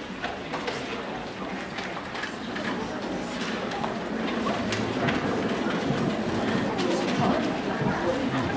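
Audience chatter filling the hall, with a piano on a wheeled platform rolling across the stage floor: a low caster rumble that builds about halfway through, among scattered footsteps and knocks.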